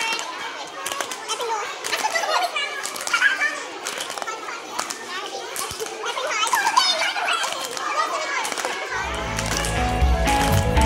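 Several teenage girls talking over one another and laughing during a hand-clapping game, with sharp hand claps scattered throughout. Background music with a low beat comes in near the end.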